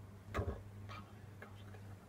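Steady low hum of a small electric fan heater running, with a few light ticks over it.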